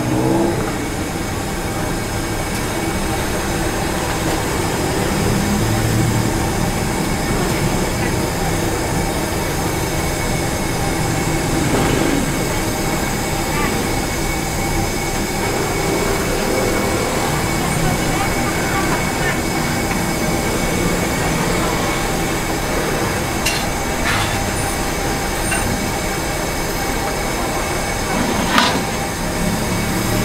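Steady roadside street ambience: a continuous traffic and engine hum with faint background voices, and a few short knocks, the loudest near the end.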